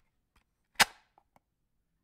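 One sharp crack a little under a second in, with a short fade, and a few faint clicks before and after it.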